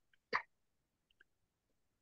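Near silence on a noise-gated video call, broken once, about a third of a second in, by a single very short non-speech vocal sound, hiccup-like.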